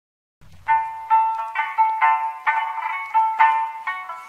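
Background music after a brief silence: a simple, bright melody of short notes at about two a second, starting just under a second in.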